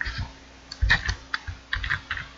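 Typing on a computer keyboard: a short, irregular run of keystrokes.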